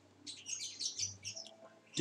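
Small birds chirping: a quick run of short, high chirps through the first second and a half, then tailing off.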